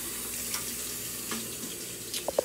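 A steady, even hiss with two faint clicks, about half a second and a second and a half in.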